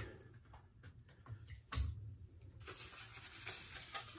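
Shaving gear being handled at a shave bowl: faint clicks, a sharper knock a little before the midpoint, then a faint steady hiss from about two and a half seconds in.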